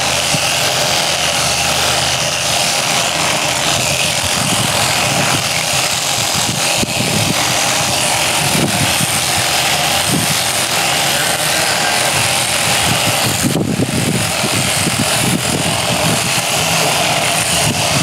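Electric sheep-shearing handpiece on a flexible drive running steadily, its comb and cutter clipping through a sheep's fleece.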